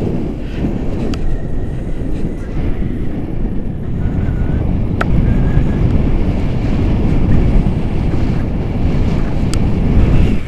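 Wind from a paraglider's flight buffeting an action camera's microphone: a loud, steady low rumble, with one sharp click about five seconds in.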